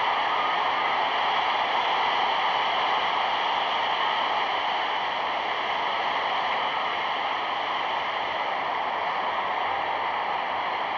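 Steady, even hiss of an old film soundtrack, with no commentary.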